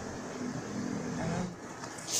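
Speech only: a man's low, drawn-out "uh", over steady background noise.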